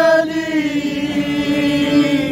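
Several men singing one long held note together in Puadhi akhara folk style, accompanied by a bowed folk sarangi; the note dips slightly in pitch about half a second in and is sustained throughout.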